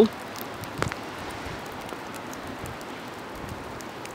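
Steady hiss of wind, with a single small click just under a second in.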